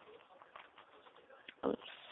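Quiet room tone with a faint hiss, a small click about one and a half seconds in, then a brief spoken word near the end.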